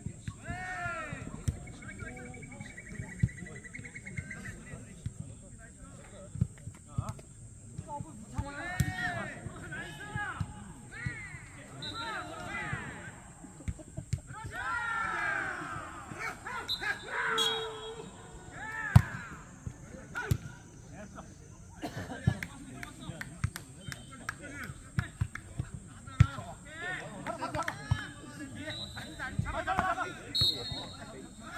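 Jokgu match play: the ball is kicked and bounces on the artificial-turf court, making repeated sharp thuds, the loudest about 19 s in. Players shout calls during the rallies.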